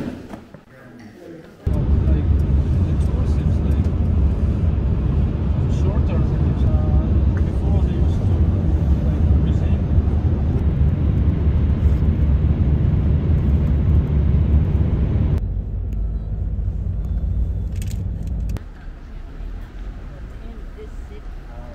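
Road and wind noise inside a car cabin at motorway speed: a loud, steady low rumble that starts suddenly about two seconds in and drops to a quieter rumble a few seconds before the end.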